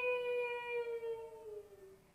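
A woman's voice holding the long drawn-out vowel of the cried word "Mashi!" ("Auntie!") in a dramatic Bengali poetry recitation. The single wailing note sinks slowly in pitch and fades out just before the end.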